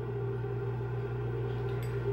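A steady low hum with a few faint steady higher tones over it, unchanging throughout, typical of an appliance or electrical background hum.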